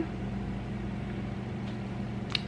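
Steady low hum of a running household appliance, with a faint hiss above it.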